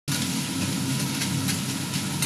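Bacon sizzling on a flat iron griddle, over a steady low rumble, with a few faint clicks.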